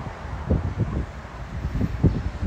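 Wind buffeting the microphone on the open top deck of a moving sightseeing bus, a low rumble that comes in uneven gusts, with street traffic under it.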